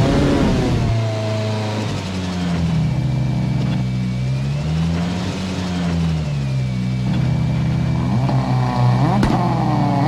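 Ford Fiesta rally car engine idling, then revved up and back down once in the middle. It revs higher again near the end with sharp crackles and pops.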